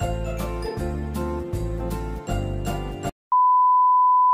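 Upbeat intro music with a bell-like jingle over a steady beat, which cuts off about three seconds in. After a moment's gap a loud, steady 1 kHz test-tone beep starts: the tone that goes with TV colour bars.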